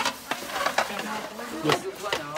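Stainless-steel compartment food trays being scrubbed and handled in a basin of soapy water: sloshing and scrubbing noise with short clinks of metal on metal.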